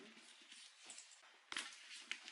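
Quiet handling of a handbag and its strap, with one sharp metal click about one and a half seconds in as the strap's snap hook clips onto the bag's gold-tone hardware.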